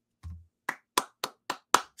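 One person clapping his hands in applause: five single, sharp claps at about four a second.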